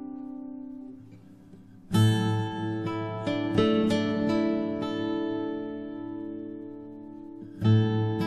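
Improvised acoustic guitar music in quartal harmony, picked arpeggios of chords built from fourths and fifths. A chord fades out over the first second, and after a short lull a new chord is struck about two seconds in with notes picked over it. Another chord is struck near the end.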